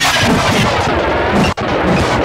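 Harsh, dense noise-based electronic music, live-coded in TidalCycles and played through a modular synthesizer. It cuts out abruptly for an instant about one and a half seconds in.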